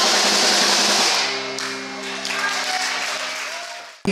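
A live rock band ending a song: the final chord and cymbals ring out for about a second, then held notes die away, with some audience applause.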